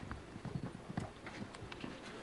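Irregular footfalls knocking on a wooden floor, several a second.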